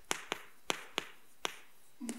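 Stick of chalk striking a chalkboard while characters are written: about six sharp, irregularly spaced taps.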